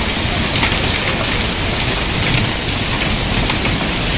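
Rain falling steadily on wet hexagonal concrete paving stones, drops splashing into shallow puddles.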